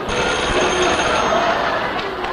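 Studio audience laughing and clapping: a steady wash of noise that holds for about two seconds and then eases.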